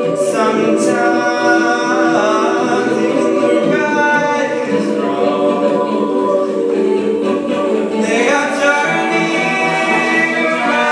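Jazz choir singing a cappella through handheld microphones: a male solo voice over sustained, shifting choir harmonies.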